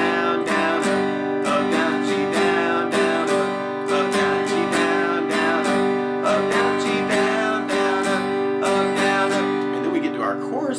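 Steel-string acoustic guitar strumming a G major chord in a down, down-up, up, down-up pattern: a steady run of even strokes with the chord ringing between them.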